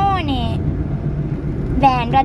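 A steady low rumble of an idling vehicle engine, with a voice trailing off in the first half second.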